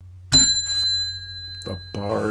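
A single bell ding: a sharp strike about a third of a second in, then a high ringing tone that fades slowly over about two seconds.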